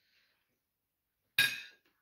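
Near silence, then about a second and a half in a single sharp clink of metal cutlery set down on a china dinner plate, ringing briefly before it dies away.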